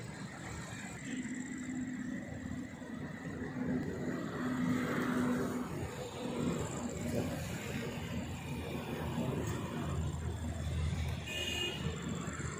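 Low outdoor background noise with a motor vehicle running, its engine coming and going through the middle.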